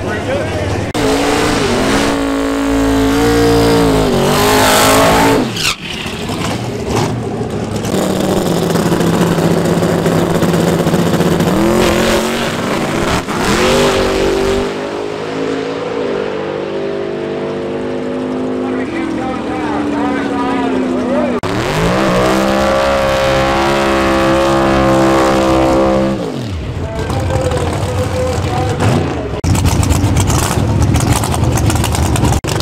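Drag race car engines revving and running hard, their pitch rising and falling several times. A long, steady high-revving stretch about three quarters of the way through cuts off abruptly.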